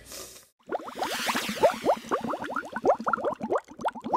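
Water bubbling: a dense run of short, quickly rising blips that starts about half a second in, after a brief gap.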